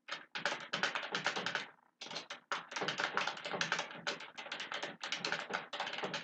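Fast typing on a computer keyboard: a steady run of keystrokes with a brief pause about two seconds in.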